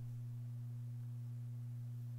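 A steady low electrical hum with one fainter, higher overtone, unchanging, and no other sound above it.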